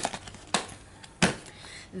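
Hands working the lid of a plastic storage tub: three short, sharp plastic clicks and knocks about half a second apart, as the lid's latches and edge are handled.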